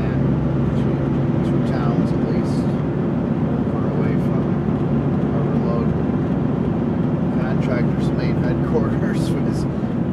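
Heavy truck's diesel engine running steadily under way, heard inside the cab as a constant low drone with a steady hum.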